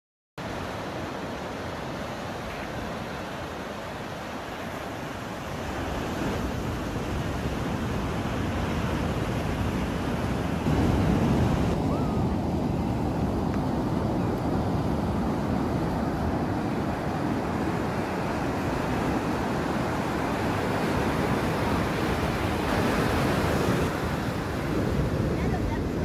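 Ocean surf breaking and washing up a sandy beach, a steady rush of water that grows louder about halfway through.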